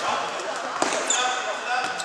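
A futsal ball is kicked and bounces on a sports-hall floor, with one sharp thud about 0.8 s in, and the sound echoes around the hall. Short high squeaks follow, like sneakers on the court surface.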